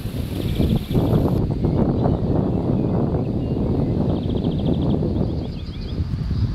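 Wind buffeting the microphone in an uneven low rumble. A small bird's fast, high trill sounds over it twice, with a few short chirps near the end.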